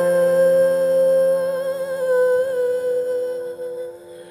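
A woman's voice holding one long note with a slight vibrato over a sustained piano chord; the voice fades out near the end, leaving the piano chord ringing.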